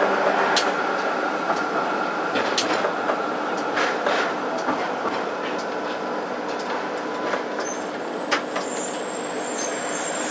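Tram running along street track: a steady rumble of wheels and running gear, with a few short sharp clicks scattered through it.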